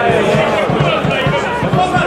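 Several spectators' voices talking and calling out at once, overlapping and loud, close to the microphone.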